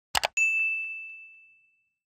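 Subscribe-button sound effect: two quick clicks, then a single bright bell ding that rings out and fades away over about a second and a half.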